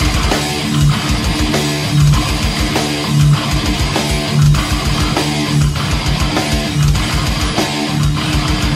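Heavy metal band playing an instrumental passage: distorted electric guitar riff over bass and drums. A heavy low accent recurs a little less than once a second.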